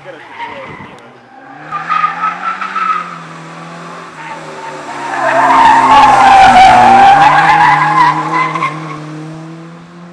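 Suzuki Swift rally car driving hard on a stage, its engine held at high revs. Loudest from about five to nine seconds in as it passes close with its tyres squealing, then fading as it drives away.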